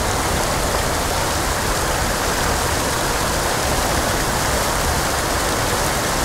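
Water pouring over a low weir into a pool, a steady, even rush of falling water.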